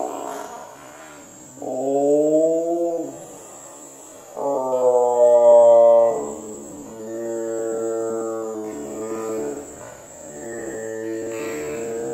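American bullfrog calling: a series of about four or five long, deep, droning calls with short gaps between them. Insects trill steadily in the background.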